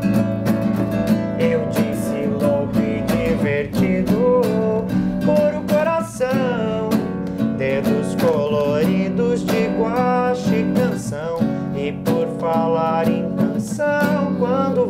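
Acoustic guitar strummed in a steady rhythm, with a man's voice singing a wavering, held melody over it.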